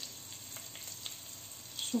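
Cumin seeds and chopped green chillies frying in hot oil in a non-stick pan: a faint, steady sizzle with small crackles.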